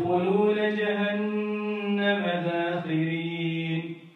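A man's voice reciting Quranic Arabic in a melodic, drawn-out chant, holding long notes that step up and down in pitch a few times before breaking off near the end.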